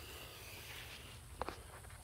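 Faint handling noise from a handheld camera being turned around, with one sharp click about one and a half seconds in.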